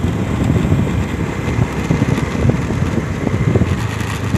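Honda Scoopy motor scooter riding along, its small engine running under a loud, fluttering rumble of wind buffeting the microphone.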